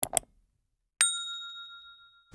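Sound effects of a subscribe-button animation: a quick double mouse click, then about a second later a single bright bell ding that rings on and fades.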